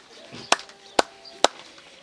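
Three sharp knocks at the table, about half a second apart.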